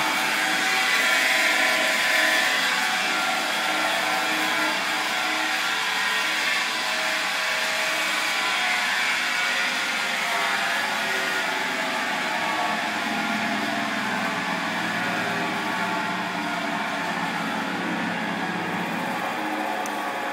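Homemade 12-inch flat lap running: a 1/2 HP Leeson motor turning a steel disc through a pulley reduction, a steady motor whir with a hum under it and hiss on top.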